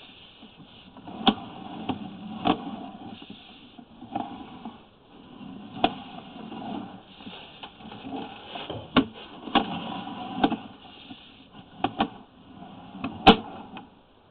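Sewer inspection camera and its push rod being worked along the pipe: irregular sharp knocks and clicks, roughly one a second and the loudest near the end, over a faint steady hiss.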